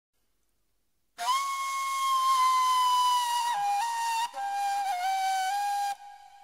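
Silence for about the first second, then a solo breathy flute enters. It holds a long note, then steps down in pitch with small ornamental turns, with a brief break partway through, as a song's instrumental introduction.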